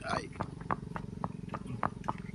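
Horse's hooves clopping on a concrete path at a walk, sharp clicks about two or three times a second, over a steady low rumble.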